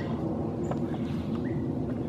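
Outdoor background of a steady low hum, with two faint, short high chirps from birds, one a little under a second in and one about halfway through.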